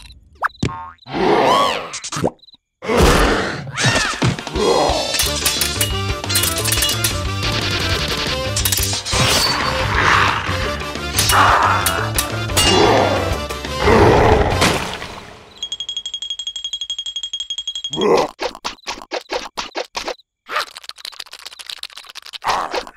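Cartoon soundtrack of busy comic music with a beat, boing-type sound effects and gliding cartoon voice squeals during a scuffle. About two-thirds of the way through the music stops and a steady high whistle tone sounds for about two seconds, followed by rapid clicking and scratching effects.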